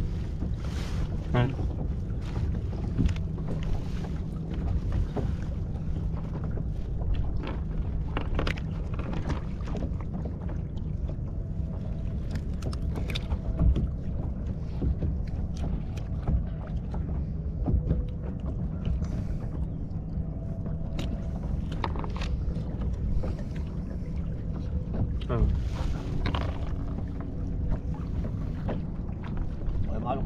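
Steady low rumble of wind on the microphone and choppy water around a small open fishing boat, with scattered short clicks and knocks from handling on board.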